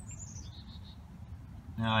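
A bird chirping: a quick run of high notes falling in pitch in the first half-second, then a few fainter, lower notes.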